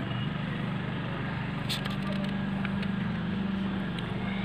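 Steady low background hum, with a low steady tone joining about halfway through, and a single brief click near the middle.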